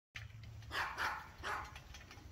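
A dog barking, three short barks in quick succession.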